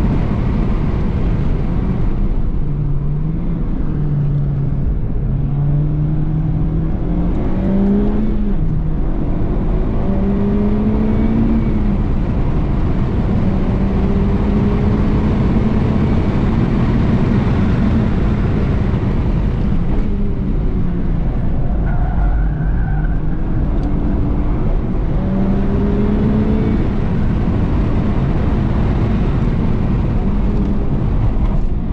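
Honda Civic FK8 Type R's turbocharged 2.0-litre four-cylinder heard from inside the cabin under hard driving. Its note rises, holds and drops back several times with gear changes and corners, over steady road and wind noise.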